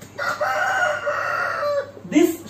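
A rooster crowing: one long call lasting most of two seconds, dropping in pitch at the end.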